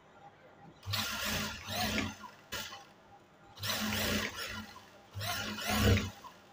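An industrial single-needle lockstitch sewing machine (Zoje) stitches in three short bursts, each about a second long, the needle running fast over a low motor hum. The seam is being backtacked: the machine sews forward and then in reverse with the reverse lever to lock the start of the stitching.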